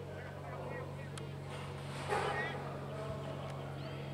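Distant shouts and calls from players and spectators at a rugby match, with one louder shout about two seconds in, over a steady low hum.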